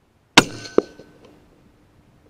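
Single shot from a moderated .204 Ruger rifle (Howa M1500 with an MTC Viper sound moderator): one sharp crack, then a second sharp crack less than half a second later. A ringing tail fades out over about a second and a half.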